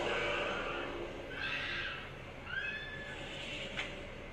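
Two short, high creaks, then a single sharp click near the end as a door's lock is turned.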